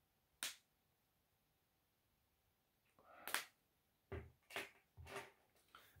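Near silence broken by a few faint, short noises: a click about half a second in, then a soft burst and a run of quick taps and rustles over the last three seconds, from the handling of small perfume sample vials.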